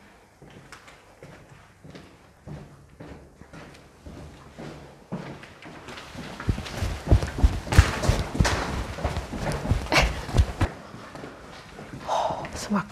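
Footsteps and scuffing on a hard, gritty floor inside an abandoned building: soft and sparse at first, then louder and denser about halfway through, with heavy thuds over a few seconds before the end.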